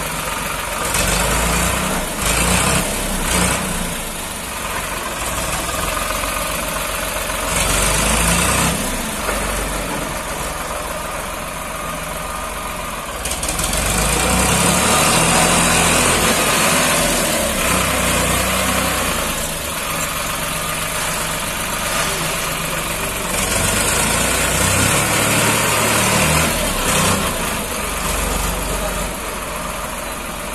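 Farmtrac 60 tractor's three-cylinder diesel engine running under load as its front dozer blade pushes soil, the engine note swelling and easing, loudest around the middle.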